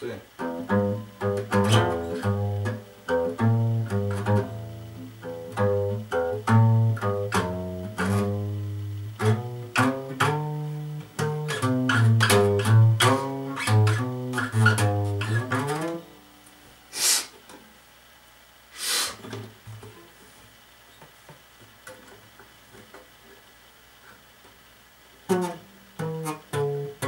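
Yamaha steel-string acoustic guitar finger-picked: single notes over repeated low bass notes for about sixteen seconds, then the playing stops. Two short noisy sounds follow in the pause, and the guitar starts again just before the end with a short laugh.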